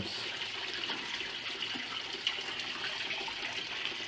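Spring water running steadily below a ledge: a continuous, even rush of flowing water.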